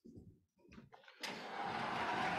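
Soft footsteps of a person walking, then, a little over a second in, a steady rustling noise that carries on past the end and is louder than the steps.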